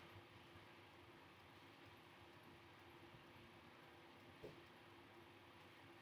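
Near silence: room tone with a faint steady hum and one soft click about four and a half seconds in.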